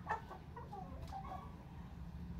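Domestic chickens clucking: a string of short calls, the loudest just after the start, over a steady low rumble.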